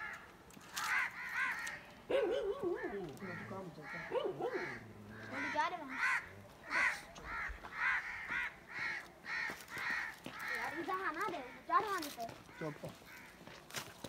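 Crows cawing over and over in a rapid run of short calls, about two or three a second.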